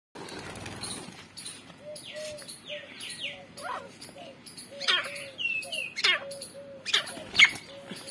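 Grey francolins calling, a short low note repeated about twice a second with a few higher falling calls. Over this come several loud bursts of wing flapping in the second half as a francolin held upside down by its legs struggles.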